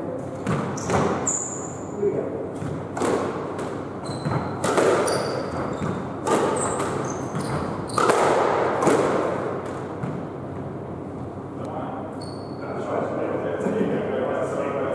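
Squash rally: the ball is struck by rackets and thuds off the court walls in quick succession, with short high squeaks of shoes on the wooden floor, all ringing in the court. The hitting thins out about ten seconds in.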